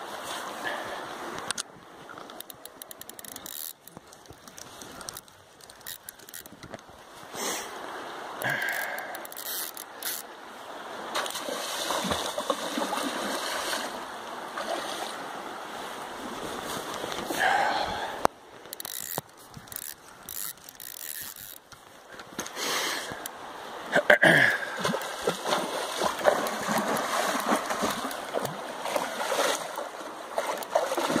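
River water flowing and splashing against the bank, with irregular knocks and rustling from a hand-held phone microphone and wind. The splashing grows louder toward the end.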